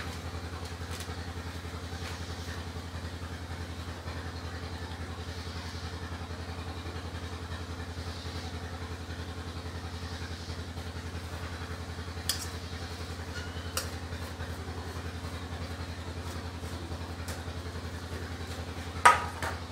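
A small engine or motor running steadily at idle, a low, even hum with a fast regular pulse. Two light clicks come in the second half.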